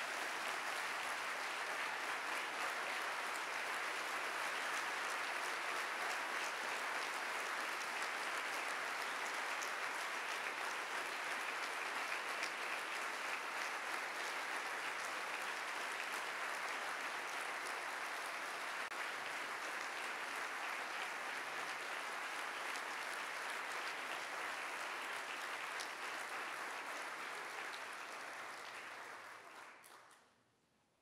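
An audience applauding steadily, a dense, even clapping that tapers off near the end.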